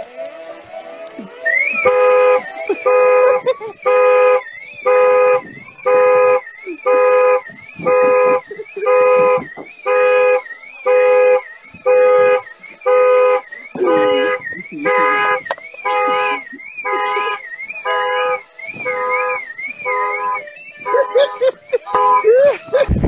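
Car alarm going off, set off by a man standing on the car's roof. The horn honks about once a second, and an electronic siren warbles up and down over it. It starts about two seconds in and stops just before the end.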